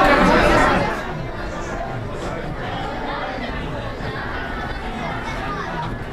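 Many people chattering in a crowded indoor ride station, a steady murmur of overlapping voices. A loud hiss of air cuts off about a second in.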